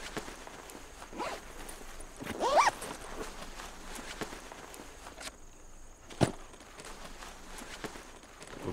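Footsteps and shuffling on grass, with scattered small clicks, a brief pitched vocal sound about two and a half seconds in, and a single sharp knock about six seconds in.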